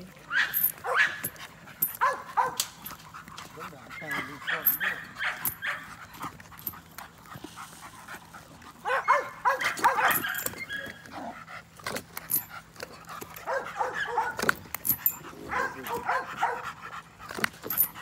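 Dog barking and yipping in play, in several bouts with short pauses between. Scattered sharp clicks and knocks run through it.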